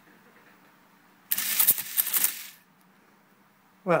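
Facit ESA-0 electromechanical calculator running one addition cycle: its motor-driven mechanism clatters loudly for a little over a second, about a second in, then stops.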